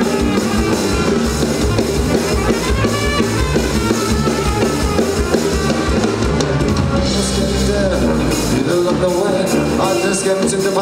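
Live band playing an upbeat number: a drum kit beat under a tuba bass line, with saxophone and electric guitar. The deepest bass drops away briefly near the end.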